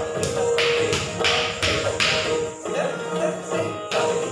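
Kathak footwork: bare feet stamping on the floor in rhythm, about three stamps a second for the first two seconds, a pause, then one more stamp at the end. Recorded Indian classical instrumental music plays under it.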